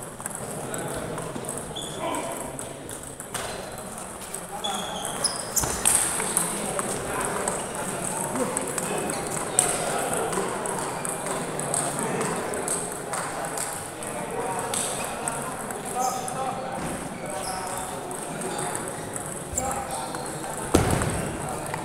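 Celluloid-type table tennis ball clicking sharply off bats and the table in short rallies, a few separate strokes at a time, over the steady hum of many voices in a large hall.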